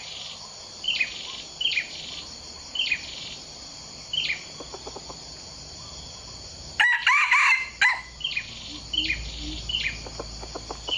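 A red junglefowl cock crows once, a short call of about a second, a little before the end. Quieter clucks come a few seconds earlier. Short, high falling bird chirps repeat throughout.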